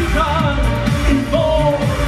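Live synth-pop band music played loud over a club PA: a male singer's voice over synthesizer and a steady beat.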